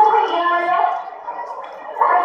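Recorded song playing for a dance, a voice singing over the music, dropping quieter about a second in before the music picks up again at the end.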